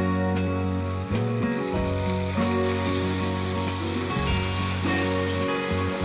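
Background guitar music over a sizzle of tomato puree hitting hot oil and fried onion masala in a kadai.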